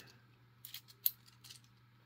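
Small metallic ticks of a thin flexible tensioner being jiggled in the TSA keyway of an Antler three-digit combination padlock. A sharp click about a second in comes as the lock gives way and the shackle comes free without a key.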